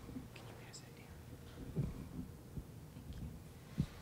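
Quiet audience pause: faint whispered voices and a couple of soft knocks.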